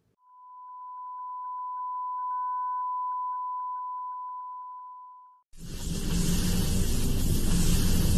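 A steady 1 kHz test tone of the kind played with colour bars, swelling in and fading away over about five seconds. About five and a half seconds in, a loud noisy sound effect for an animated logo starts suddenly: a hiss over a low rumble.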